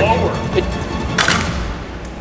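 A single sharp knock about a second in, during a test throw of a small wooden trebuchet, with the tail of a voice before it and background music throughout.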